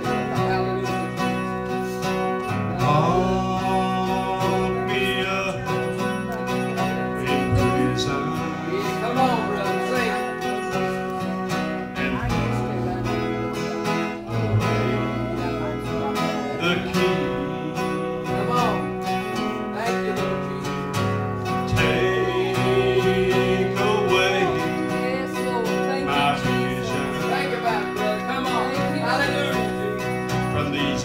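Live country gospel music on two guitars: an acoustic guitar strumming chords while an electric guitar plays a wavering lead melody over it.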